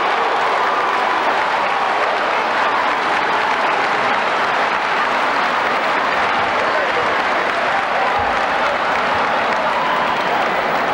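Large audience applauding steadily, with voices calling out over the clapping.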